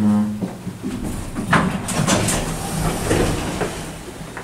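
Elevator door sliding open as the car reaches the floor: a rumble from the door track with a few knocks, the sharpest about a second and a half in.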